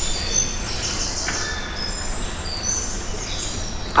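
Night-forest ambience sound effect played over a theatre's speakers: many short, high chirping calls at several pitches over a low hum.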